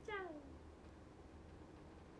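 A short meow-like call at the very start, falling in pitch and fading within half a second; then faint room tone.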